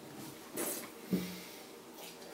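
A wine taster with a mouthful of sparkling rosé breathes out sharply through the nose, then gives a brief low hum as he works the wine in his mouth.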